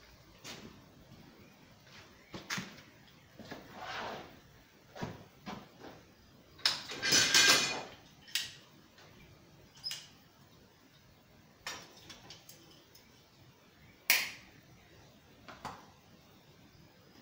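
Blacksmith's tongs and tools knocking, clinking and scraping at a coal forge while a small sheet-metal hoop is set into the fire to heat. There are scattered single knocks, a longer scraping rush about seven seconds in that is the loudest sound, and a sharp knock near the end.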